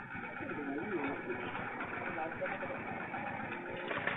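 Motorcycle engine idling, heard through a CCTV camera's narrow-band microphone, with people talking over it.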